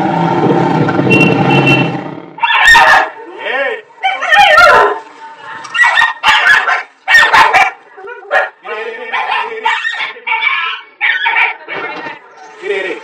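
Dense, loud street noise for the first two seconds, then a puppy whimpering and yelping in a string of short, wavering cries.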